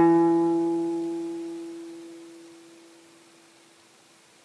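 A single guitar note ringing out and dying away slowly, fading to almost nothing by about three seconds in.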